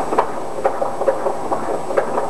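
Unborn baby's heartbeat picked up by a fetal Doppler probe on the mother's belly and played through the monitor's speaker as a rapid pulse of about two beats a second. It is nice and strong and regular, a healthy fetal heartbeat.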